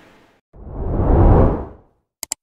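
Whoosh transition sound effect: a deep rush of noise that swells up about half a second in and dies away about a second and a half later.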